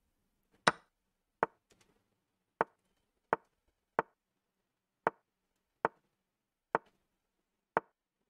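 Computer mouse clicking: about nine sharp single clicks, spaced unevenly most of a second apart.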